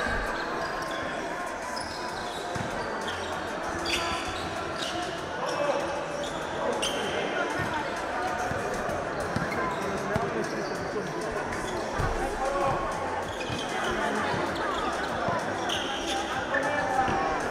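A basketball bouncing on a hardwood-style indoor court during play, with players' voices and shouts in a reverberant gym.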